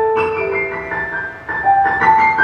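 Live acoustic instrumental passage: a violin plays a slow line of long held notes over sustained accompaniment, the notes stepping in pitch. The music dips briefly about a second and a half in before the next note enters.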